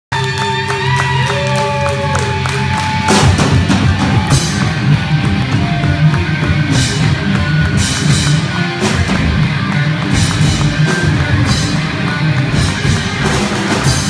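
Live rock band playing loud amplified music. It opens with a few seconds of held electric guitar notes, one bending up in pitch, then the drum kit and the rest of the band come in together about three seconds in and play on.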